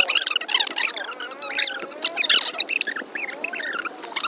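Fast-forwarded conversation: several voices sped up into high-pitched, squeaky, chipmunk-like chatter, with no low tones.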